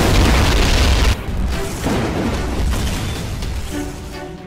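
A deep boom sound effect, loudest in the first second and trailing off in a rumble, over background music.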